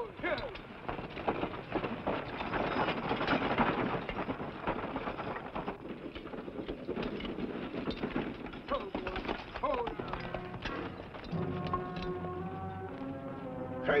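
Hoofbeats of several galloping horses and the rattle of a horse-drawn covered wagon on a dirt trail. A sustained music chord comes in about eleven seconds in and holds to the end.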